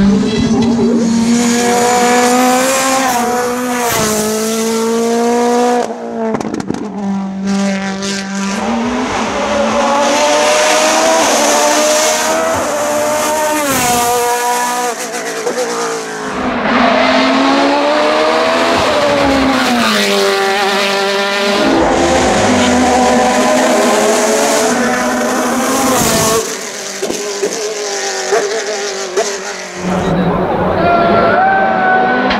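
Hill-climb race car engines at full throttle, one run after another, each revving up and dropping sharply at every gear change as the cars accelerate past.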